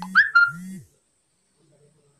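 Smartphone message notification tone: two short high electronic notes, heard over the tail end of a spoken word.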